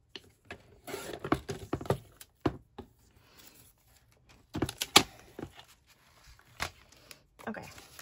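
Fiskars sliding paper trimmer cutting a sheet of paper: a run of short clicks and scrapes in the first two seconds, then knocks and paper handling on the tabletop, with a sharp knock about five seconds in the loudest.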